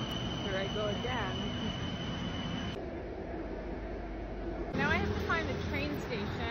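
Steady low rumble of city noise with snatches of indistinct voices. The sound changes abruptly about three seconds in and again near five seconds.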